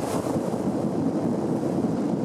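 Steady rush of wind buffeting the microphone on a moving motorbike, with the ride's road and engine noise underneath.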